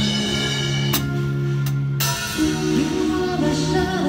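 Live band music: sustained keyboard chords with two sharp drum-kit hits about one and two seconds in, and a singer's voice entering about halfway through.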